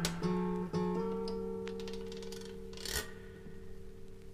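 Acoustic guitar playing the final few strummed and plucked chords of a folk-blues song, then letting them ring and slowly die away. A short noise sounds about three seconds in.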